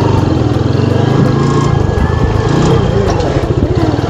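TVS motorcycle's single-cylinder engine running steadily as the bike rides along, a close, even run of firing pulses.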